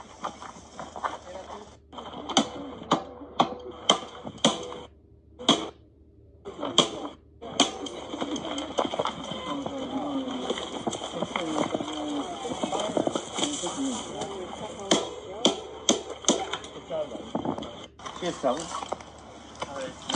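A rock hammering a dented mountain-bike wheel rim in repeated sharp knocks, about two a second, in runs near the start and again later on. The dent is being knocked out so the tyre will seat and hold after a flat. Background voices chatter throughout.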